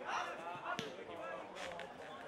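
Scattered distant shouting of players and onlookers, with a single sharp thud of an Australian rules football being struck by hand or boot a little under a second in.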